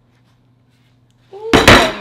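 A heavy cast iron skillet turned upside down and set down hard on a wooden cutting board: one loud clunk about a second and a half in, after a near-silent start.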